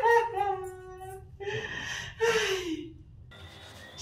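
A woman laughing: a long held high note, a sharp breath, then a second note sliding downward as the laugh dies away about three seconds in.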